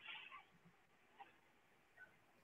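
Near silence: room tone, with one faint, brief high-pitched sound at the very start.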